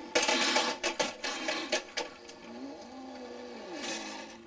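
Toy remote-control truck's small electric motor whirring, with several knocks and clatters in the first two seconds. Near the end a softer whine rises and then falls in pitch.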